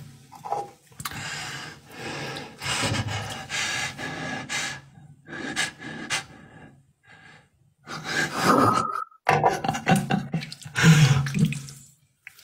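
A person laughing breathlessly in wheezing, gasping bursts, with a short high squeal near the end.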